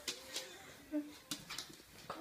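Mostly quiet, with a few light clicks and a brief, faint whimper from a Staffordshire bull terrier puppy.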